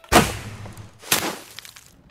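Sound effects of a bow being shot: two sudden rushing sounds about a second apart, each dying away over about half a second.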